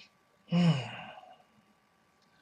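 A man's short voiced sigh about half a second in: a breathy exhale that falls in pitch and fades within under a second.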